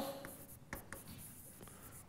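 Faint scratching of a marker writing a word on a whiteboard, in a few short strokes.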